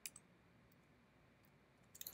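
Near silence: room tone with a few faint computer keyboard keystrokes, one right at the start and another near the end.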